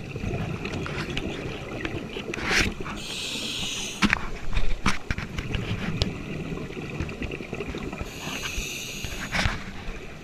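Scuba diver breathing through a regulator underwater: two long hissing inhalations about five seconds apart, with the low bubbling rumble of exhaled bubbles between them and a few sharp clicks.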